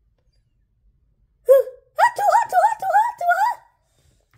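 A person's voice making nonverbal sounds: one short vocal sound about a second and a half in, then a quick string of about five high, rising-falling hiccup-like sounds.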